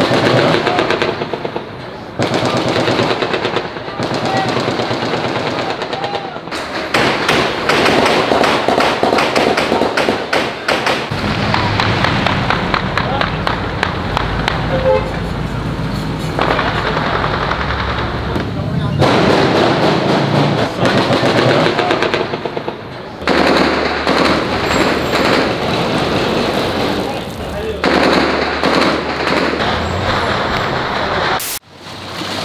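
Bursts of automatic rifle fire, AK-47s fired in celebration, rapid shots following one another in quick succession through most of the stretch, with people's voices mixed in. The sound changes abruptly several times.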